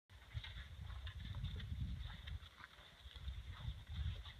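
Faint outdoor wind rumbling and fluttering on the microphone, with scattered light ticks and crunches over it.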